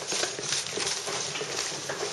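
A busy, irregular clatter of quick, hard taps and knocks.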